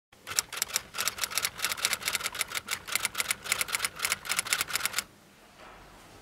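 Typewriter keys struck in quick, uneven runs of sharp clacks, stopping abruptly about five seconds in.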